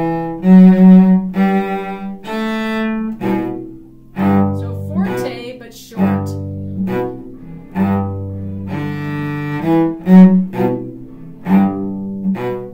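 Solo cello played with the bow: a string of separate bowed notes in its low and middle range, some short strokes and some held for about a second, with a brief slide in pitch about five seconds in.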